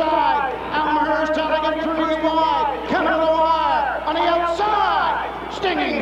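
A harness-race announcer calling the stretch drive to the finish in a raised voice, talking without a break, over a steady low hum.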